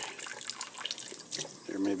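Tap water trickling from a kitchen faucet onto gel in a cupped hand over a stainless steel sink, with a few small splashes and drips.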